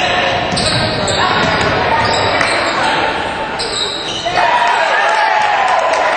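Basketball game sound in an echoing gym: the ball bouncing on the hardwood floor amid players' and spectators' voices.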